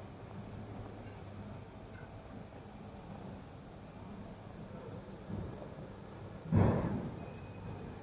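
A low steady hum with one loud, sudden thump about six and a half seconds in, dying away within half a second; a fainter knock comes just before it.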